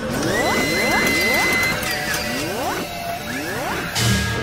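Intro music with electronic sound effects: groups of short rising pitch sweeps about once a second, over a steady high tone through the first half.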